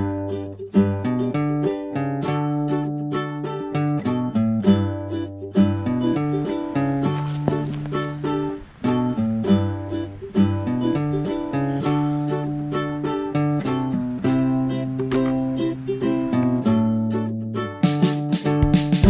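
Upbeat background instrumental music led by a plucked string instrument over a bass line, with quick repeated notes.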